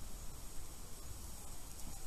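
Steady hiss of river water pouring over a low weir, with an irregular low rumble underneath.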